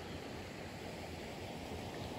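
Steady outdoor ambience: a faint, even rushing noise with no distinct events.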